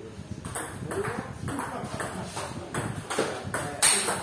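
Table tennis ball in a doubles rally, with bat strikes and table bounces clicking at about two a second. The loudest hit comes near the end.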